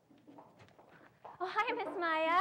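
Faint room tone after an abrupt cut, then, about one and a half seconds in, a high-pitched voice starts speaking with drawn-out, bending vowels.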